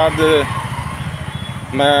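A motorcycle engine running in street traffic, a steady low pulsing under a haze of road noise, with a man's voice briefly at the start and the end.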